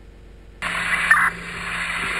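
A burst of radio static, a loud hiss with a low hum beneath it, cutting in suddenly about half a second in. It is police-radio interference picked up on the body camera.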